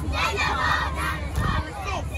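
A group of young cheerleaders shouting a cheer together, loudest in the first second, with a steady low rumble underneath.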